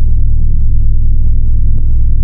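Dark electronic intro music: a loud, deep rumbling drone with a thin, steady high tone held above it.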